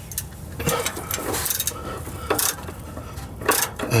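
Hand ratchet clicking in short strokes, with a few louder metallic knocks, as it backs out a loosened transmission-to-engine bolt through a long string of socket extensions.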